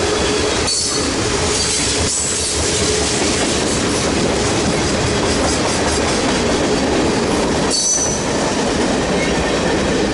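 Freight train tank cars and boxcars rolling steadily past at close range: a loud, continuous rumble and clatter of steel wheels on the rails. Short high wheel squeals cut through about a second in and again near the end.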